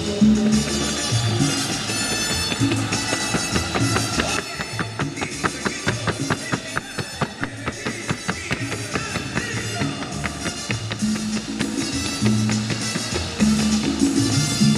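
Upbeat music with a drum kit and a steady beat, with a run of quick, evenly spaced sharp taps at about four a second through the middle.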